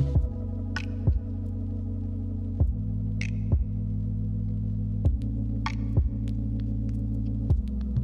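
Background music: a held low synth chord with a soft, low beat thudding about once a second and a few light high ticks.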